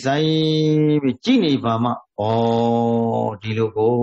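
A man's voice chanting a Buddhist recitation: long syllables held at a steady pitch, each about a second or more, with short breaks and a few quicker gliding syllables between them.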